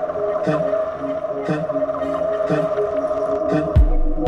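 Background electronic music: a sustained synth tone over a light beat about once a second, with a heavy bass kick drum coming in near the end.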